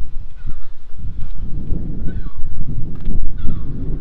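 Wind buffeting the microphone as the camera is carried along the car, an uneven low rumble, with a few faint short calls in the background, one falling in pitch about two seconds in.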